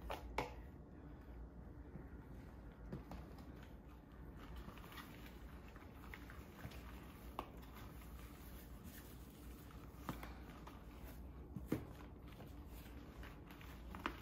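Faint kitchen handling: soft rustling with a few scattered light taps as whole tilapia is coated in plantain fufu flour batter, over a low steady room hum.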